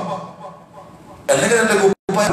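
A man's voice preaching: a phrase trails off into a short pause, then a loud stretch of speech starts about one and a half seconds in and cuts off abruptly.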